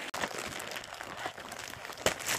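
Crinkly packaging wrap being crumpled and pulled open by hand, a continuous run of small crackles.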